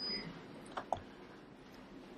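Two faint clicks a little under a second in, from a laptop being operated, against quiet room tone.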